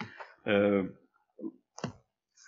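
A man's voice in a pause of speech: one held hesitation sound, then a couple of short clicks near the end.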